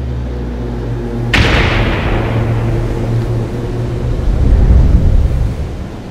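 Cinematic logo-reveal sound effect: a low held drone, then a sudden heavy impact a little over a second in that dies away slowly, followed by deep rumbling that swells near the end and then fades.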